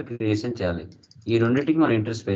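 A man speaking, with a few faint computer keyboard key clicks in a short pause about a second in.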